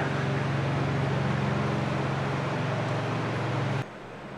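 A machine running steadily, a low hum with a rush of air over it, cut off suddenly near the end.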